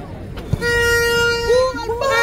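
A ball kicked with a dull thud about half a second in, then a horn blast holding one steady note for about a second, followed by shouting voices.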